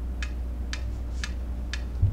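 Metronome set at 120 beats per minute ticking evenly, two sharp ticks a second.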